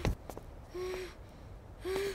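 Two short, breathy gasps from a person, about a second apart.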